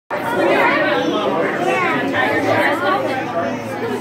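Chatter of many people talking over one another, with no single voice standing out.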